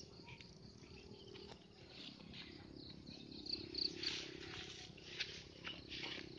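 Faint wild birdsong: scattered high chirps, with a quick run of short notes about three and a half seconds in, over a steady low hum and a few light clicks.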